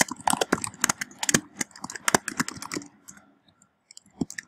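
Typing on a computer keyboard: a quick run of keystrokes for about three seconds that thins to a few faint taps near the end.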